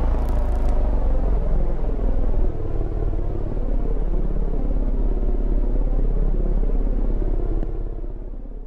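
A loud, deep, steady rumbling drone from the closing title card's soundtrack, which begins to fade out near the end.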